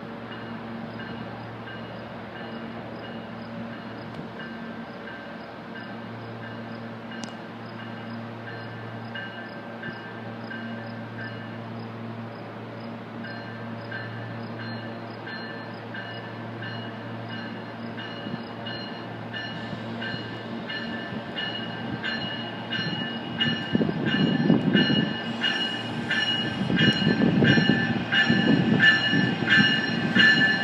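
RTD A-Line Silverliner V electric commuter train approaching the platform. A steady hum is joined by clicking, then a rumble of wheels on rails that grows much louder over the last several seconds as the train draws near.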